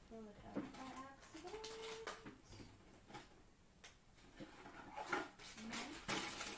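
A woman humming softly in a few short, gliding notes, with scattered light clicks and rustles of small craft items being handled as she rummages.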